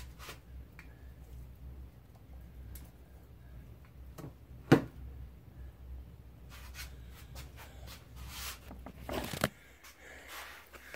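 Quiet handling of a plug-in power supply at a wall outlet, with one sharp click about halfway through as the plug is pulled out, over a low steady hum. Rustling near the end.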